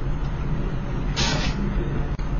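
Steady low electrical hum and hiss of the recording's background noise, with a short burst of breathy hiss a little past one second in.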